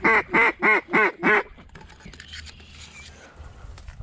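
A mallard duck call blown in a quick run of about six loud quacks, about four a second, stopping after a second and a half.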